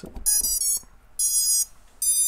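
Brushless drone motors beeping through their BLHeli_S ESCs as the battery is plugged in and the ESCs power up. A quick run of short startup tones is followed by a longer beep about a second in, and another right at the end.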